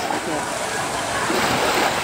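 Steady surf and wind noise at the shore, with faint voices in the background.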